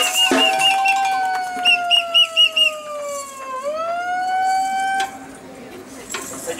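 Electronic siren wailing: one long tone slides slowly down in pitch, then rises again and cuts off suddenly about five seconds in, with a faster warbling tone over it at times. A few shaker rattles sound at the very start.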